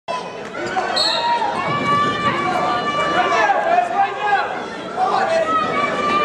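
Several spectators' voices talking and calling out over one another in a gymnasium, with no clear words.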